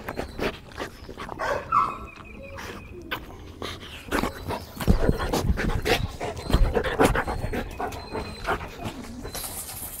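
A large shepherd-type dog panting and scuffling about, with irregular thumps as it jumps up against a person.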